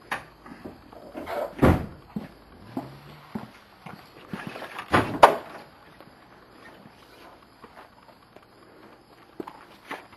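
Scattered knocks and scuffs of a person moving about and handling things. The sharpest knocks come about two seconds in and as a pair about five seconds in.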